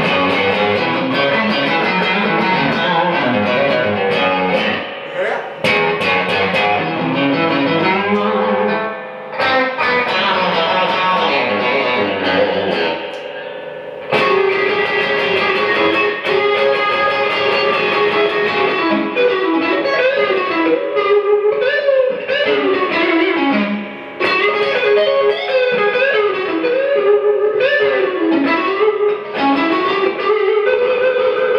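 Fender Stratocaster electric guitar played amplified, a run of blues lead phrases with many string bends pushing notes up and letting them fall back. There are a few short breaks between phrases.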